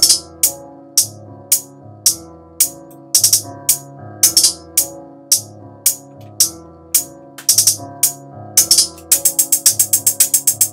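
Trap hi-hat pattern from a drum program playing back: spaced, pitch-shifted hi-hat hits with short rapid stutter rolls. About nine seconds in it switches to a steady fast run of sixteenth-note hi-hats, about eight hits a second.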